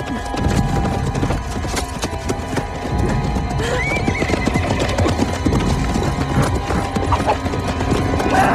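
Horse hoofbeats pounding repeatedly, with a horse's whinny about four seconds in, over dark orchestral film music.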